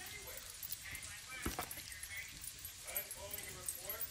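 A metal spoon spreading guacamole onto a crisp tostada, with one sharp click about a second and a half in. Faint vocal sounds run in the background.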